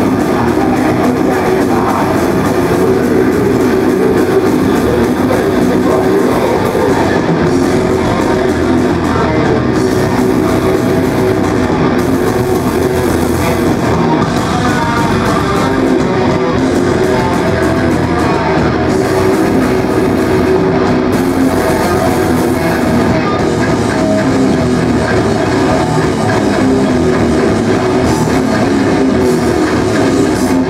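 Live metal band playing loudly and without a break: distorted electric guitar over a drum kit.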